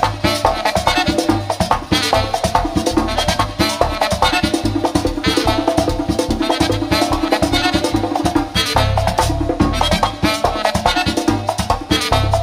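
A live merengue típico band playing an instrumental passage: button accordion and saxophone over tambora, congas and electric bass, with busy, driving percussion. A long held note sounds in the middle.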